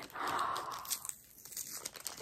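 A small blind-bag wrapper crinkling and tearing as it is opened by hand. The rustle is strongest in the first second, then dies down to a few faint crackles.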